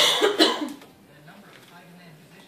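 A person coughing, two harsh coughs in quick succession within the first second.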